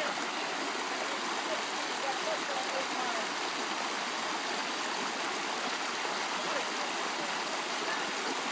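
Shallow rocky stream running, a steady rush of water.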